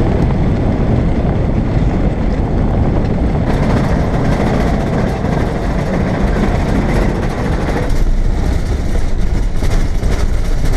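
Mitsubishi L300 van driving over a corrugated dirt road: a loud, continuous rumble with a rapid judder as the tyres and body rattle over the corrugations.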